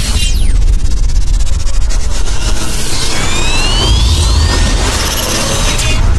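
Channel logo intro sting: sound effects over a deep, steady rumble. A falling swoosh comes at the start, and two rising whistling sweeps come about halfway through. It cuts off abruptly at the end.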